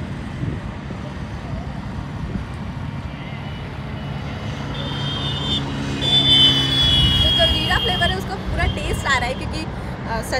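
A motor vehicle passing on the road: its engine hum grows louder to a peak a little past the middle, then eases off. A high steady tone sounds twice over the loudest part, the second time longer.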